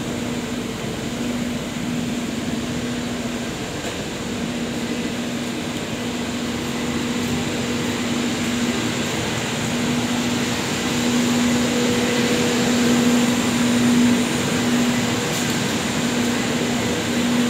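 Steady drone of textile-mill machinery running: an even wash of mechanical noise with a constant low hum, swelling a little about two thirds of the way through.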